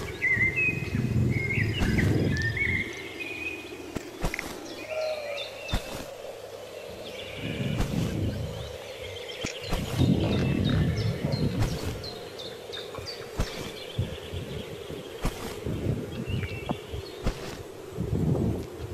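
Wild birds chirping and calling in short, varied high phrases. Low rumbling noise comes and goes, loudest about two, eight and ten seconds in, and there are occasional brief clicks.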